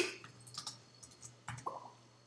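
Typing on a computer keyboard: a string of separate key clicks, the loudest right at the start.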